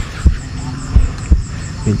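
A few dull, low thumps in a slow, uneven pulse, about four in two seconds, over a faint high chirping that repeats several times a second.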